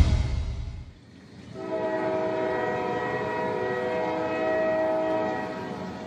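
The tail of a deep boom fades out over the first second. Then, from about a second and a half in, a passenger train's air horn sounds one long, steady chord of several tones, easing slightly near the end.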